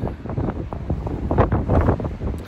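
Gusty wind buffeting the microphone: a loud, uneven low rumble.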